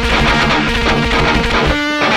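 Heavy, distorted electric guitar riff played through a cranked amp, with a deep low end. Near the end one note is held and rings.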